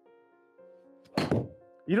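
A single heavy thunk about a second in, as a golf iron strikes the ball and the hitting mat in a deliberately jabbing, digging stroke. Faint background music runs underneath.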